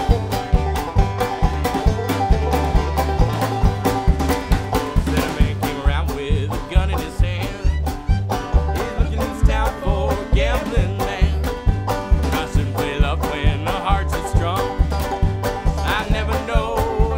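Bluegrass band playing an instrumental break: banjo picking over an upright bass and a steady beat. Fiddle and harmonica lines come in over the top from about a third of the way in.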